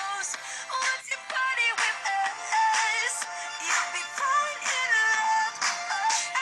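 A pop song with a sung lead vocal playing through a SimplyVibe SG-S350P portable speaker, fed from an iPhone over an AUX cable; the sound is thin in the bass.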